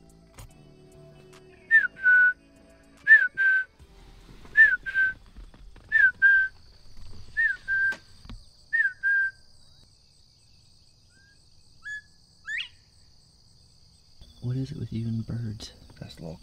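A clear two-note whistled call, a short falling note then a held steady note, repeated six times about one and a half seconds apart, followed by a single rising whistle a few seconds later. A person's voice comes in near the end.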